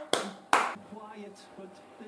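Hand claps: two sharp claps about half a second apart near the start, then only faint background sound.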